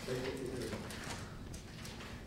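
A woman's voice reading testimony aloud into a microphone in a hearing room.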